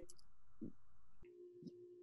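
Faint steady electronic tone in a pause between words, heard over a video-call audio link, with a brief soft low sound about a third of the way in.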